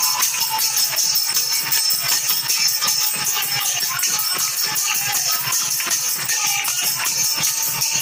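Devotional group music: small brass hand cymbals jingling continuously over a fast, steady beat, with voices singing along through a microphone.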